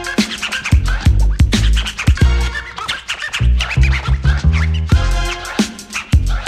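Instrumental break of a 1986 old-school hip hop dub mix: a steady drum beat and bass line with turntable scratching over it.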